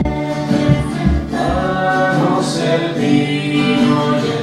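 An offertory hymn at Mass: voices singing over acoustic guitar accompaniment, held sung notes swelling in the middle.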